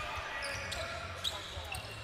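Court sound from a live basketball game in an arena: a ball bouncing on the hardwood and short squeaks of sneakers, over a low arena rumble and faint crowd voices.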